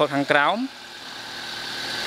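A car engine running at idle, an even rushing noise with a faint steady hum that swells gradually over the last second or so.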